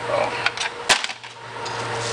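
A single sharp knock about a second in, over a steady low hum.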